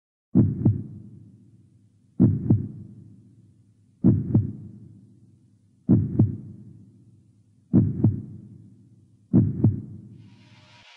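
Heartbeat sound effect: six deep double thumps ('lub-dub'), about one every two seconds, each fading away slowly.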